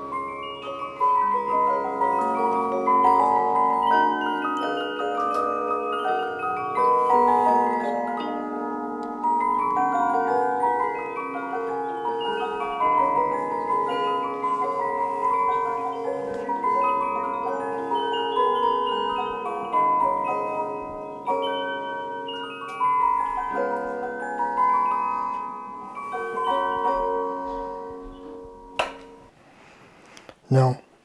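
Swiss cylinder music box of about 1820 playing a tune with its lid closed: the pins of the clockwork-driven cylinder pluck the steel teeth of the comb in a steady run of bright, ringing notes. The playing fades out near the end.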